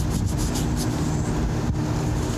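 Cloth wiping over a phone's lens and microphone: a quick run of scratchy rubs in the first second and a sharp click near the end. Underneath runs a steady low mechanical rumble and hum.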